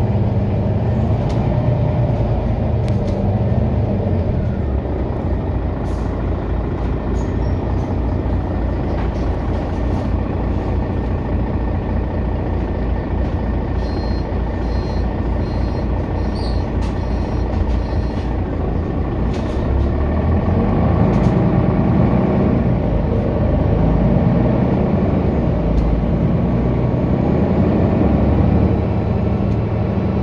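City bus running along a road, its engine and road noise heard from inside the bus. It gets louder for a stretch in the second half.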